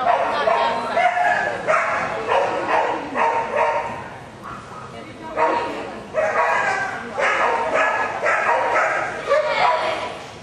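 A dog barking repeatedly in quick runs of sharp barks, about two a second, with a short lull in the middle.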